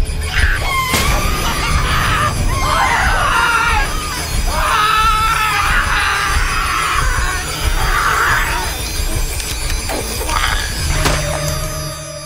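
People screaming over music, the cries rising and falling again and again and stopping shortly before the end.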